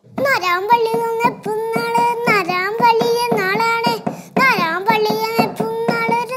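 A child singing a fast run of 'na na na' syllables on a mostly level note, dipping in pitch a few times.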